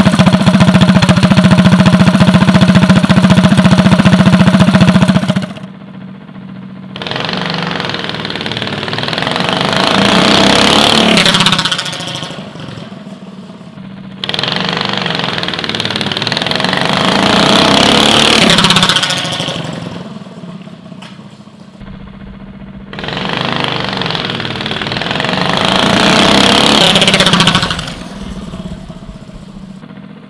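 Go-kart's Predator 212cc single-cylinder engine with an aftermarket intake and exhaust, running loud and steady close by for about five seconds. Then come three short full-throttle drag runs, each rising in pitch and growing louder over about five seconds before cutting off sharply.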